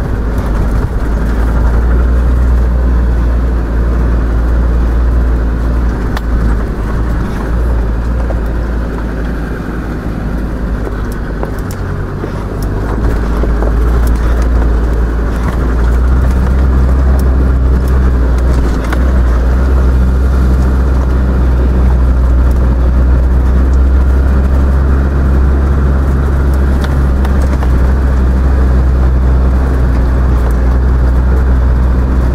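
Land Rover Defender's engine running steadily on a rough mountain track, heard from inside the cabin as a deep, continuous drone. It eases off about ten seconds in and picks up again a few seconds later, with a few light clicks and rattles.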